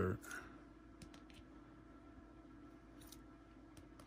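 Faint, scattered clicks and taps of rigid clear plastic card holders being handled as one rookie card is swapped for the next, a few close together near the start and a couple more later.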